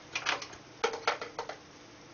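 A handful of short, irregular clicks and taps as an oscilloscope probe is clipped onto the lead of an air-core coil, over a faint steady hum.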